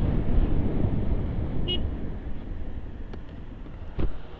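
Motorcycle riding noise, a low rumble of wind and engine, fading steadily as the bike slows to pull over. A short high beep sounds about halfway through.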